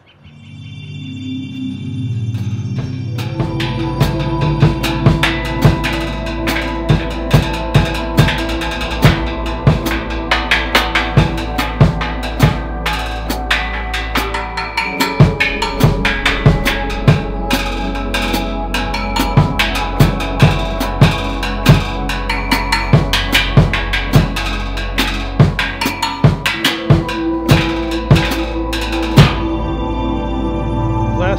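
Drum kit played fast with sticks, snare, bass drum and cymbal hits, over a loud music backing of sustained low and mid tones. The backing fades in over the first couple of seconds, the drumming starts a few seconds in, and the low notes drop out briefly twice.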